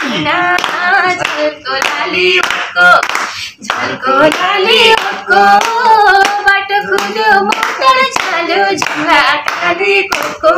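A woman singing unaccompanied, with hand claps keeping time.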